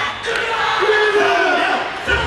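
Several voices shouting a long, drawn-out call together in a break where the music's drum beat drops out.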